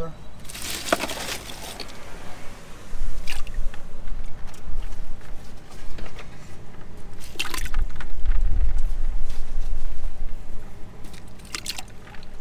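Ice cubes clattering as they are scooped by hand from a cooler, then splashing into water in a live-bait bucket, with a few sharp knocks and low rumbling later on as the bucket is handled.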